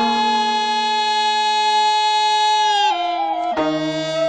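Korean court instrumental music (gugak) played by winds and bowed strings. A long held note bends down into a new note just before three seconds in, and lower notes join about half a second later.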